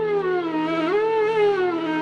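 Flute music: a slow melody line that slides up and down between notes over a steady low drone.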